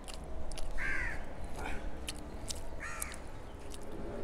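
A bird calling twice with short calls, about a second in and again near three seconds, with a fainter call between them. Soft wet clicks come from fingers mixing rice into curry on a plate.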